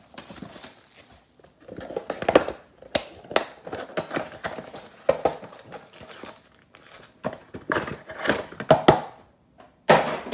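Plastic wrap crinkling and tearing, with cardboard rustling and light knocks, as a sealed trading-card box is unwrapped and opened by hand. The noises come in irregular bursts with brief pauses.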